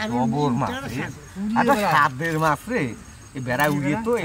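Men's voices talking in short, broken phrases.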